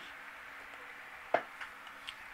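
A quiet pause in the narration: faint steady room hiss, with one short click a little past halfway.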